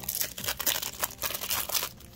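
Clear plastic wrap around a stack of trading cards crinkling under the fingers as it is peeled off, a quick irregular run of crackles.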